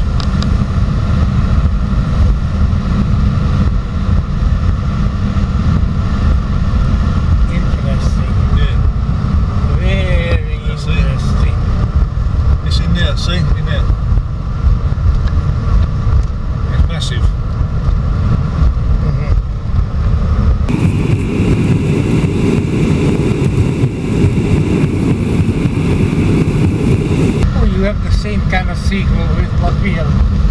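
Car cabin noise while driving: a steady low rumble of tyres and engine. For about six seconds past the middle the noise turns rougher, with an added hiss.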